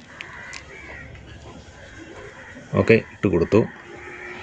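Faint rustling and light ticks of fingers pressing loose coco-peat potting mix around a cutting in a small clay pot. A man says a word near the end.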